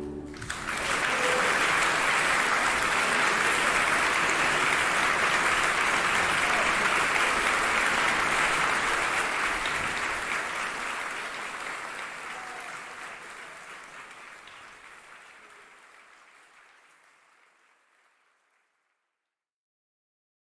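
An audience applauding. The applause swells up within the first second, holds steady for several seconds, then thins out and dies away by about eighteen seconds in.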